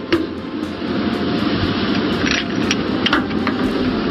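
Steady rush of wind and ship noise on the deck of a warship at sea, with a sharp report just after the start as a warning round is fired. A few fainter cracks follow later on.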